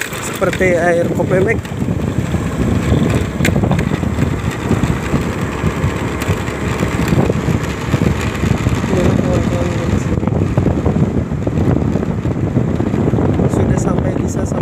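Honda Scoopy scooter riding along a road: steady wind buffeting on the microphone over the scooter's running engine and tyre noise.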